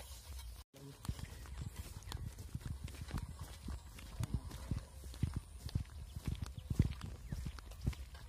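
Footsteps on a dirt track close to the microphone: irregular soft thuds and scuffs, after a brief break in the sound under a second in.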